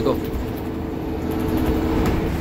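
City bus running, heard from inside its cabin: a steady low rumble with a constant hum over it.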